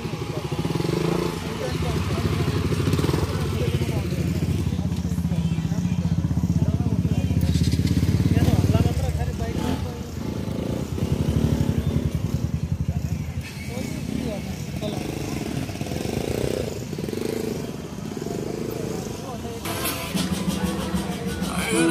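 Motorcycle engine running, loudest in the first half, with people's voices talking over it.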